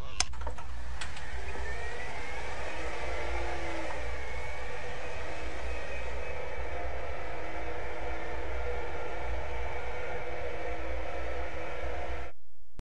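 Electric wheelchair motor whirring steadily as the chair drives, with a whine that rises as it gets going. Two sharp clicks about a second apart come near the start.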